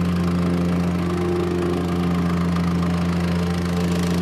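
Petrol-engined Masalta vibratory plate compactor running at work, compacting soil along the bottom of a trench: a steady low hum with no change in pace.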